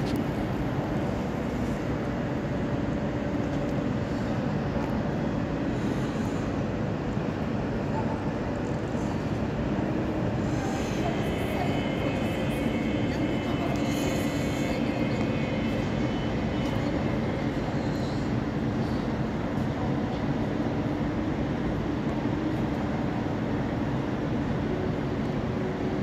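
Trains rumbling and humming in a large, echoing glass-roofed station shed, a steady noise throughout, with a high thin squeal lasting several seconds midway.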